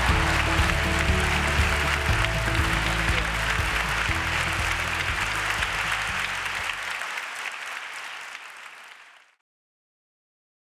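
Audience applauding, with background music underneath; both fade out near the end.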